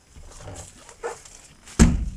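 An animal call: one short, loud call near the end, over a low rumbling.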